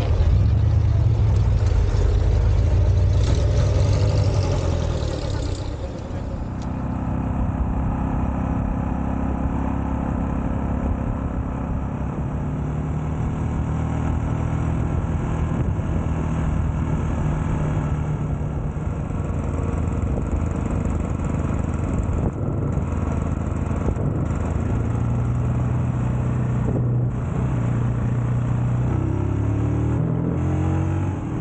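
Louder low engine rumble for about the first six seconds as vintage cars drive past. After that, the engine of a Jawa 350 OHC motorcycle runs steadily under way, its pitch rising and falling a little with the throttle.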